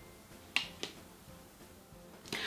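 Two short, sharp clicks about a third of a second apart, a little over half a second in, against a quiet room.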